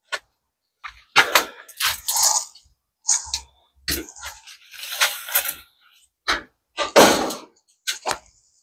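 Scrapes, rustles and knocks of hands handling gloves, tools and the car body, in short irregular bursts about a second apart, ending with the camera being handled.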